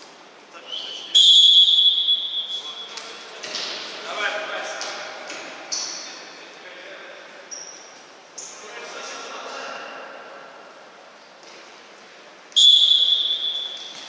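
Referee's whistle blown twice: a long, loud blast about a second in and a shorter blast near the end as play restarts from the centre spot. Between the blasts come players' shouts and a few knocks of the ball.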